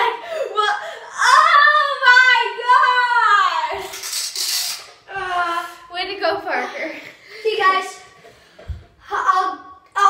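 Children's high-pitched voices, squealing and laughing without clear words, with a short hiss about four seconds in.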